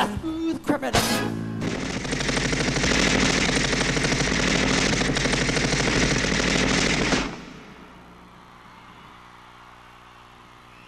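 Staged machine-gun fire sound effect played over a concert PA system, a rapid unbroken rattle lasting about five and a half seconds that stops abruptly, as the dancers drop to the stage. Just before it, the last loud hits of the band end.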